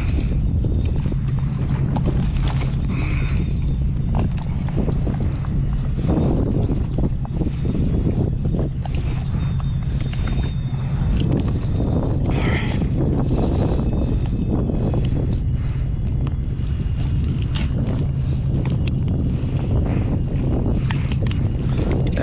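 Wind buffeting the camera microphone with a steady low rumble, over irregular knocks and rustles of hands handling a large fluke caught up in a mesh landing net and working at the tangled jig and line.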